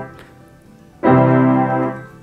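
Electronic keyboard playing one low held note at a time, one beat each with a beat of silence between: a note cuts off at the start, then after about a second of quiet another note sounds for about a second. The notes and gaps demonstrate crotchets alternating with crotchet rests.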